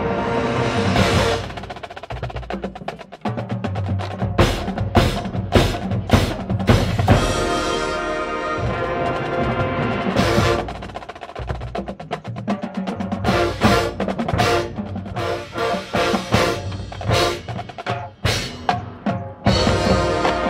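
High school marching band playing its field show: the winds hold full chords near the start and again in the middle, while drums and percussion strike sharp, loud accents, most of all in the second half.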